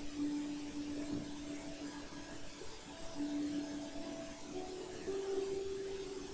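Faint electronic hum made of thin steady tones that cut in and out and jump between a few pitches, settling on a slightly higher one for the last second or so.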